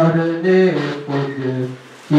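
A man singing Urdu devotional verse solo without instruments, in long held notes that step down in pitch, with the phrase ending just before a short breath near the end.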